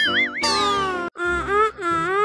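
Cartoon sound effects: a wavering, whistle-like tone, then a long downward glide, then short meow-like calls that bend up and down in pitch.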